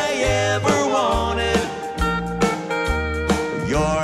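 Live band playing an instrumental country break, with a lap steel guitar sliding between notes over bass, drums and keyboards.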